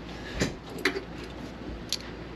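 Handling noise: a few separate soft knocks and clicks, some with a low thump, as a pair of dial calipers is picked up.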